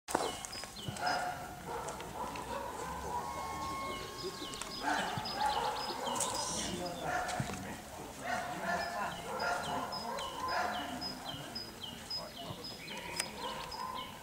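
Voices of people talking across an open field, with a short high chirp falling in pitch repeated about twice a second.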